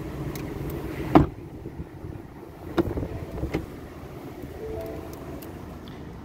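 Pickup truck door shut with one heavy thump about a second in, then two lighter clicks a couple of seconds later, over steady outdoor background noise.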